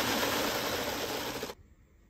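Vestaboard split-flap display clattering rapidly as its flaps flip the characters into place, stopping suddenly about a second and a half in once the message has settled.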